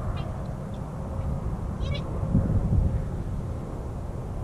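Wind rumbling on the microphone, with a few brief high-pitched chirps near the start and about two seconds in.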